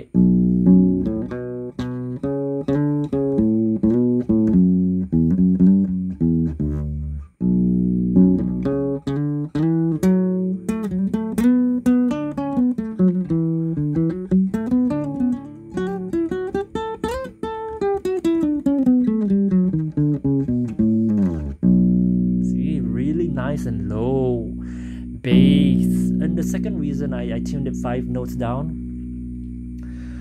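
Nylon-string Yamaha CG-40 classical guitar, tuned five semitones down to a baritone tuning (B E A D G♭ B), played to show off its deep bass. Plucked notes, with a run in the middle that climbs and then falls, then low notes left ringing near the end.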